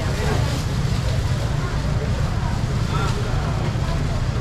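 A steady low rumble with faint voices of people talking nearby.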